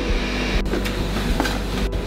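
A kitchen blender running steadily while mixing a milkshake of ice cream and milk, with a low hum under a loud whirring hiss. The sound cuts out for an instant about halfway through and again near the end.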